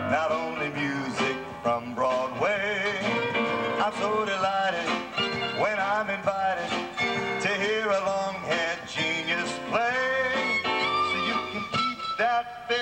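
A small live band playing, with an electric keyboard in the accompaniment and a melody line with wavering pitch over it.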